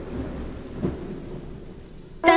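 Rain-and-thunder sound effect: an even hiss of rain with a low rumble of thunder, swelling briefly a little under a second in.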